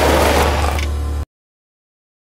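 The final held chord of a pop-soul song: a deep sustained bass note under fading upper parts, cutting off suddenly a little over a second in.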